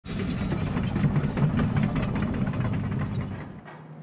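An engine running with a steady, rapidly pulsing rumble, fading out just before the end.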